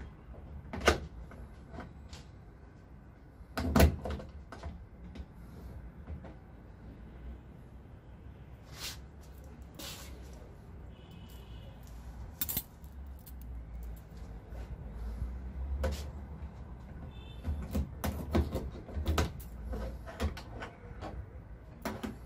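A large padlock and its keys being handled on a metal hasp on a wooden cabinet door: scattered sharp metallic clicks, clinks and key jingles as the padlock is fitted and tested. The loudest is a single knock about four seconds in, with a cluster of clicks near the end.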